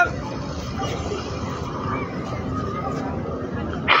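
Outdoor street background: a steady noise with a faint murmur of voices from the surrounding crowd.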